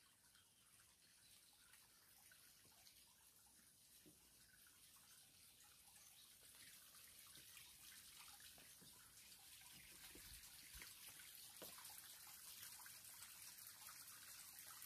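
Faint trickle of water running through the stone overflow tunnel that drains Laacher See, with a few faint drips. It grows slowly louder toward the end.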